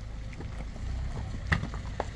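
Wind rumbling on the microphone, with one sharp knock about one and a half seconds in.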